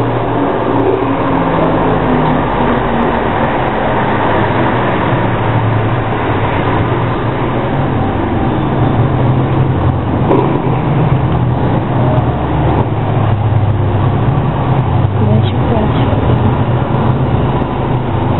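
Hair dryer running steadily: a loud blowing rush with a low motor hum that wavers in strength, used to dry the latex on the face.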